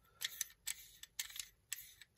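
Light, uneven clicks from a camera lens and its M42-to-Canon EOS adapter being turned and worked in the hands, about three clicks a second.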